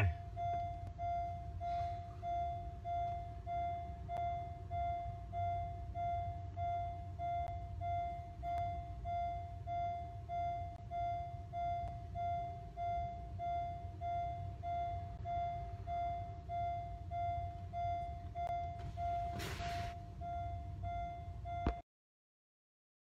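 Car's warning chime sounding over and over at a steady pace, about three chimes every two seconds, with the driver's door ajar. A low rumble lies underneath, and there is a brief rustle near the end.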